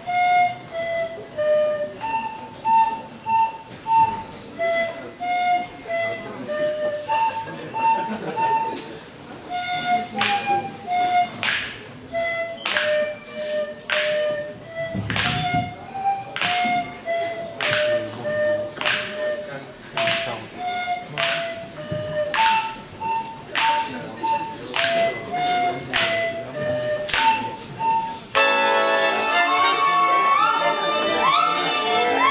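Russian folk music: a single high, clear melody of held notes. From about ten seconds in it runs over sharp, evenly spaced percussive beats at roughly one a second. Near the end a loud accordion comes in.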